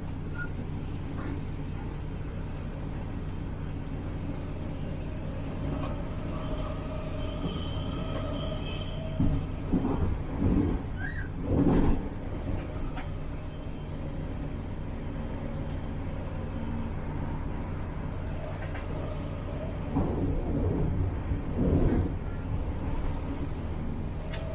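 Diesel multiple unit running at a steady pace, its engine and running gear giving a constant low hum. Twice, around the middle and again near the end, the wheels clatter loudly over track joints and pointwork.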